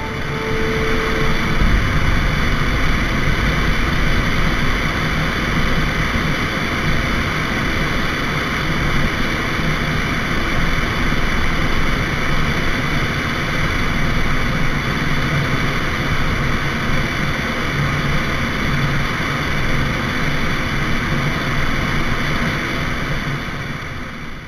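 Steady in-flight drone of a light propeller plane's engine mixed with wind rushing over a wing-mounted camera, unchanging throughout.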